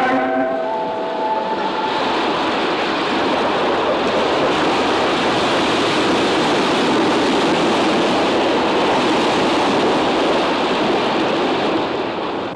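Steady rushing of water churned up by a moving ferry's hull and wake, an even unbroken noise. A few held tones fade out in the first second or so.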